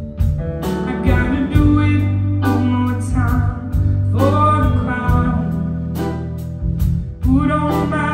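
Live band music: a woman singing phrases of a ballad over sustained bass notes, guitar and a steady beat of cymbal ticks.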